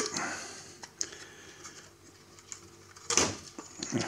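Handling noise from the metal chassis and circuit boards of a test instrument being taken apart: a sharp click about a second in, a few faint taps, then a louder scrape and clatter near the end as the relay module is swung up.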